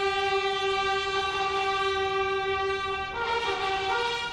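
A long, steady horn-like note, held for several seconds, moves to a higher note about three seconds in.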